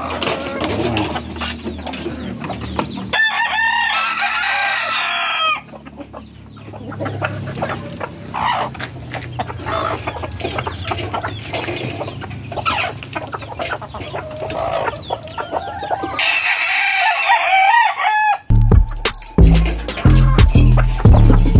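Gamefowl rooster crowing twice, each crow lasting about two seconds, with hens clucking between the crows. Music comes in near the end.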